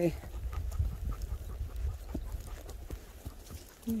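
Horse walking along a brushy trail, its hooves making scattered soft thuds, over a steady low rumble.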